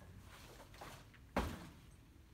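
A single thud of feet landing from a jump on artificial turf, about a second and a half in.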